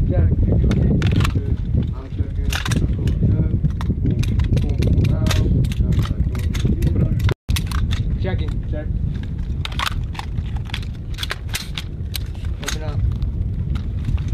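Gunshots from pistols and carbines, sharp cracks at irregular intervals, some in quick succession in the later seconds, over a heavy rumble of wind on the microphone. The sound drops out for an instant about seven seconds in.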